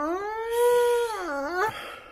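A long howling wail on one voice: it glides up in pitch, holds, dips and briefly rises again, then stops shortly before the end.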